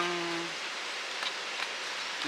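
Steady rushing of a river's flowing water. A man's voice holds one steady hum for the first half second.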